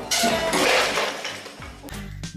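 A crash of shattering glass about a tenth of a second in, crackling and fading over about a second and a half, over background music.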